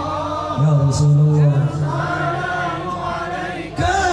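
A group of men chanting an Islamic sholawat, a devotional song praising the Prophet, in unison with long held notes. The chant dips briefly just before the end, then comes back louder.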